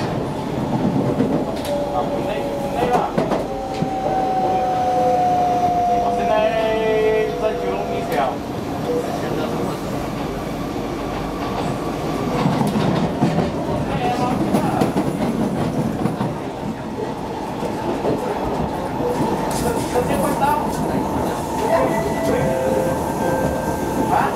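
Inside a Kawasaki C151B metro train car under way: a steady rumble of wheels and running gear on the track. A whine falls in pitch from a few seconds in, and there are occasional sharp clacks.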